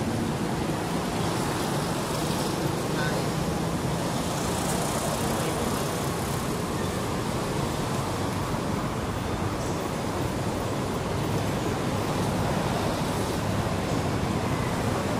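Steady outdoor roar of road traffic, an even noise that stays at one level without breaks.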